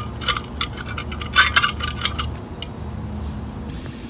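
Light metallic clinks and rattles of handled metal hardware, a quick irregular run in the first two seconds, then a low steady background hum.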